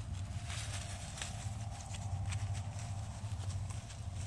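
Tall dry grass rustling and crackling as it is walked through, with irregular crackles over a steady low rumble.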